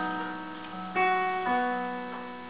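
Piano playing slow, sustained chords in the song's introduction. A new chord is struck about a second in and the bass note moves half a second later, each fading as it rings.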